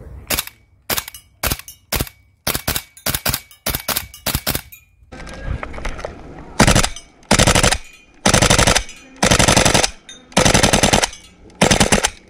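Tokyo Marui Type 89 gas blowback airsoft rifle firing from a 400-round drum magazine. First comes a string of about a dozen quick single shots, each with the bolt's blowback clack. Then, from about halfway, come six short full-auto bursts.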